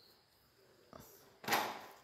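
Handling of a steel airgun air tube with a pressure gauge fitted: a light click about a second in, then one short rush of scraping noise about half a second long.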